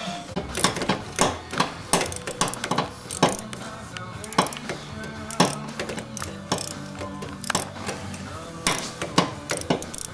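Irregular clicks and scrapes of metal hand tools working on a bare engine block, with music playing in the background.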